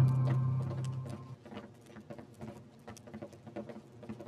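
Background music fading out over the first second or so, then a series of irregular light taps of footsteps as several people walk on a hard floor.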